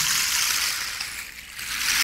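Large gourd rain stick being tipped, its fill cascading down inside with a steady rushing hiss that dies down a little past the middle and picks up again near the end.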